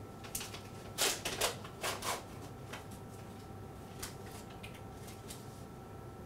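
Handling noises: a few short rustles and clicks, the loudest about a second in and again near two seconds, over a faint steady hum.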